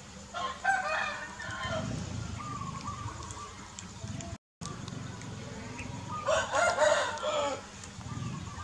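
A rooster crowing twice, each crow about a second and a half long, the first near the start and the second about three quarters of the way through.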